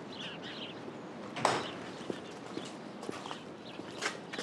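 Quiet outdoor ambience with faint bird chirps, scattered light footsteps and one sharp knock about a second and a half in.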